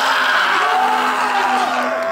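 A man letting out one long, loud bellowing yell, held at a steady pitch and breaking off after about two seconds.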